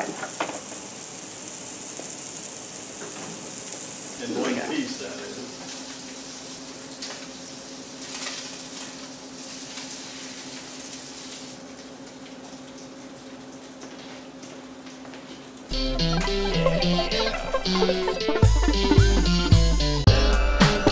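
Gyro meat slices sizzling in a hot nonstick pan, the sizzle fading out about halfway through. Loud background music comes in near the end.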